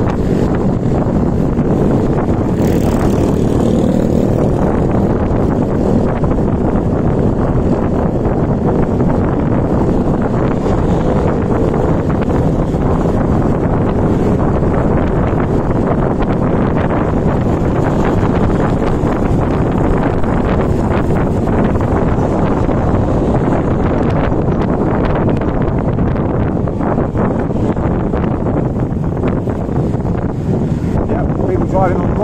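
Wind rushing over the built-in microphone of a camera on a moving motor scooter, with the scooter's engine and the surrounding motorbike traffic underneath; loud and steady throughout.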